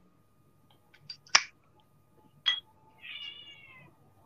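A cat meows once, a single call of just under a second that falls slightly in pitch, near the end, after a few sharp clicks.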